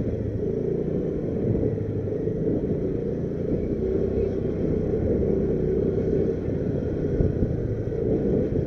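Motorcycle engine running steadily while riding slowly, under a steady low rumble.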